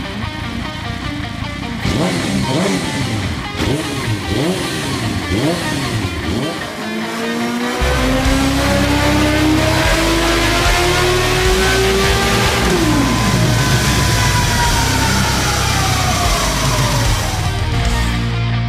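Sport motorcycle engine on a test stand, revved in a series of quick throttle blips, then held wide open in one long pull with the pitch climbing steadily until the throttle snaps shut about 13 seconds in and the revs fall; a higher whine then slowly winds down. Music plays underneath.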